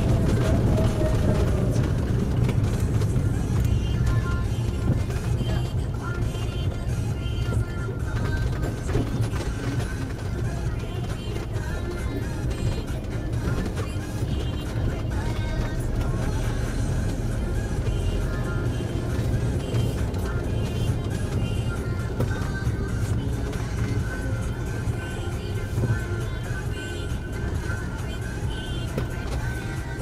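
Music playing over the steady low rumble of a car driving slowly in traffic, heard from inside the car.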